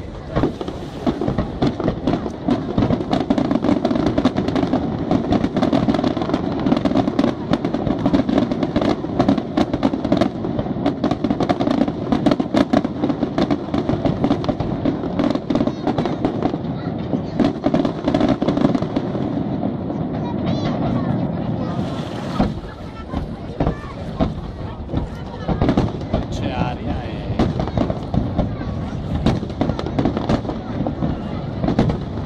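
Aerial firework shells bursting in a dense, continuous barrage of bangs and crackles. The barrage eases briefly about two-thirds of the way through, then picks up again.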